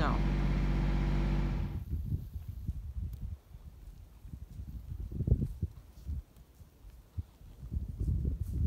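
A steady engine hum that cuts off abruptly about two seconds in. After it come uneven low rumbles and bumps of wind buffeting the microphone outdoors in falling snow.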